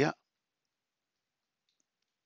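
A man's word trailing off at the start, then near silence broken only by faint computer keyboard clicks near the end as a folder name is typed.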